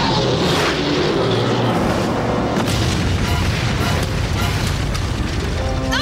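Dramatic TV action-scene soundtrack music mixed with loud, booming sound effects.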